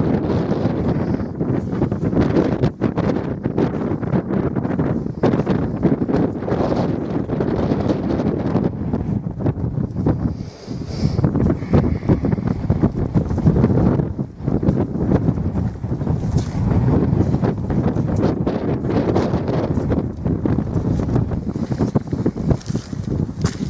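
Strong wind blowing across the camera microphone: a loud, gusty buffeting that rises and falls, with a short lull about halfway through.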